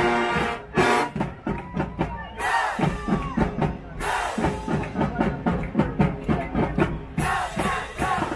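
High school marching band: a held brass chord cuts off about half a second in, then the drum line plays a quick, steady cadence. Shouts from the crowd come in briefly around the middle.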